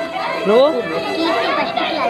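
Speech only: a voice says "No" over the chatter of other voices.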